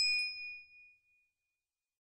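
Notification-bell ding sound effect for the end card's bell button, a bright chime with a second light strike just after it begins, ringing out and fading away within about a second and a half.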